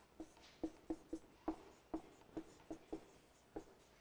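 Marker pen writing on a whiteboard: a faint, irregular string of short taps and strokes as the letters are formed.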